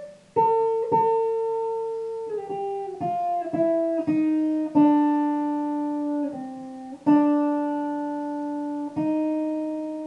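Les Paul-style electric guitar playing a slow single-note melody. Long sustained notes step downward in pitch, joined by short slides, and the last note rings out long near the end.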